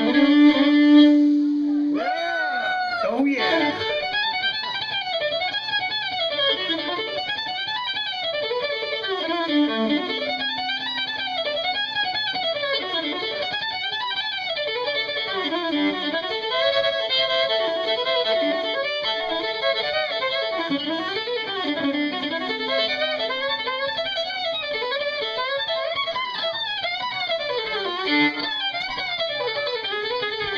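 Solo fiddle played live in a fast bluegrass style: quick runs of notes that slide up and down, broken by a few long held low notes.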